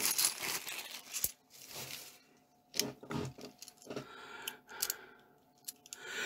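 A plastic coin bag crinkles as it is opened. Then bimetallic £2 coins clink in sharp, scattered clicks as they are tipped out and handled one by one.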